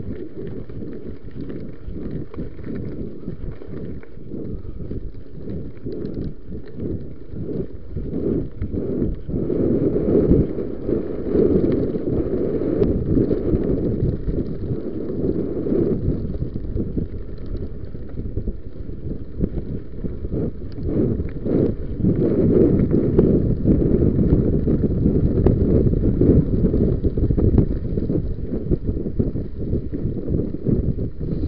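Wind buffeting a body-worn camera's microphone as a mountain bike is ridden over a rough dirt trail, with constant rattling and jolts from the bike and rider over the bumps, growing louder about ten seconds in and again over the last third.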